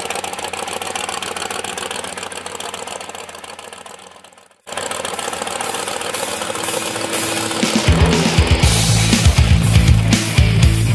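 Supercharged 418-cubic-inch stroked 351 Windsor V8 in a 1966 Mustang idling steadily, fading out about four and a half seconds in. Rock music then starts and grows louder, with heavy drums and bass over the last two seconds.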